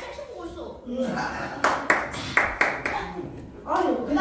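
About five sharp, separate hand claps around the middle, with someone talking through them.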